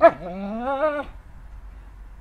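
A dog whining: one long, rising whine of about a second, in eager frustration at a root stuck in the ground that it wants to pull out.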